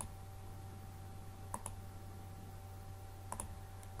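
Computer mouse button clicking a few times, a second or two apart, each click placing a point of a polygonal lasso selection in Photoshop. A faint steady electrical hum runs underneath.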